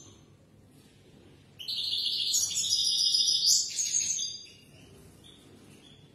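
European goldfinch singing one burst of fast, high twittering song about three seconds long, starting about a second and a half in.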